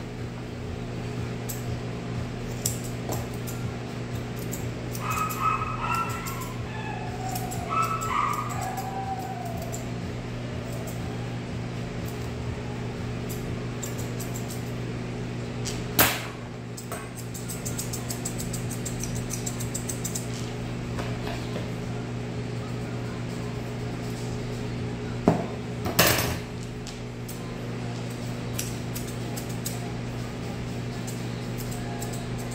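Grooming scissors snipping a schnauzer's leg hair, a light rapid clicking, over a steady low electric hum. Twice in the first third the dog gives a short whine that falls in pitch, and two sharp knocks come about halfway and near the end.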